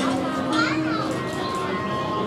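Children's voices and crowd chatter, with one high call that rises and falls about half a second in.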